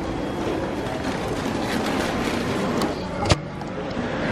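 Steady background noise of a busy fast-food restaurant's dining area, with one sharp knock about three seconds in as the camera is picked up off the table.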